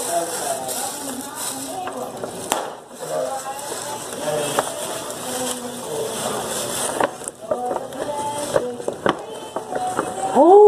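Tissue paper and a glitter gift bag rustling and crinkling as a present is pulled out, with a few sharp crackles, and voices talking in the background.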